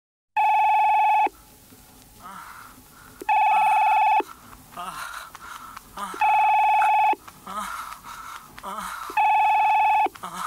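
Telephone ringing four times, each ring a loud electronic warble just under a second long, about three seconds apart.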